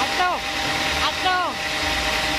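Homemade band sawmill running steadily without cutting: an even mechanical drone with a constant hum. Two short shouted calls, each dropping in pitch at the end, cut in over it, once early and once in the middle.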